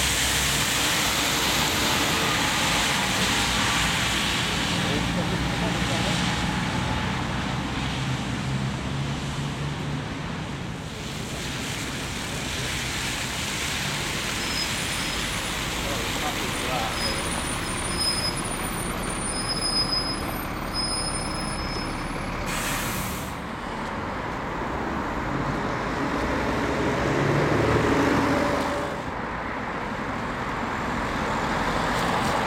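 Diesel engine of a single-deck city bus running as it pulls away and passes, over the constant hiss of tyres on a wet, slushy road. Another vehicle passes loudest near the end.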